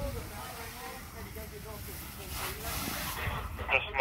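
Faint, indistinct voices talking over a steady hiss and a low, fluttering wind rumble on the microphone.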